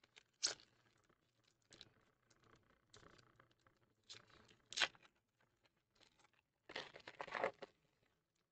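Cardboard trading cards being flipped through by hand, each card slid off the stack with a short papery swish. The sharpest swipe comes about five seconds in, followed by a longer rustling shuffle near the end.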